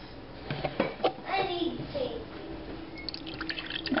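Vegetable broth poured from a carton into a glass measuring cup, the stream splashing into the cup as it fills, starting about three seconds in.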